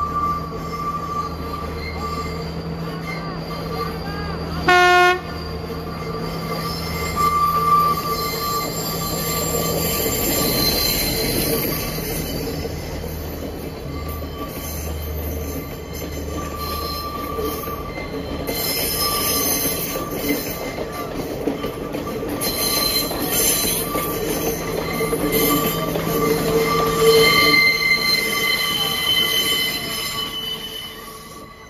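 Sri Lankan diesel passenger train crossing a long viaduct: a steady engine drone and wheels running on the rails. A short horn toot comes about five seconds in, and high wheel squeal grows louder near the end as the train comes close.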